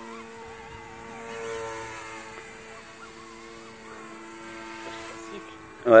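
XK K130 electric RC helicopter in flight, a steady whine made of several pitched tones that swells slightly about a second and a half in. The howl is the tail rotor working to hold the heading against the main rotor's torque.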